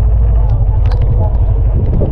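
Storm wind and heavy rain buffeting a phone microphone: a loud, steady deep rumble with scattered sharp ticks.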